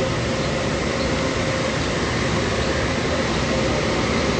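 Steady outdoor background noise with a faint steady hum, heard through a phone's microphone.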